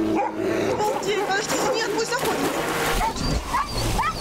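Dogs whining and yipping in many short rising and falling cries, with a person whistling twice near the end.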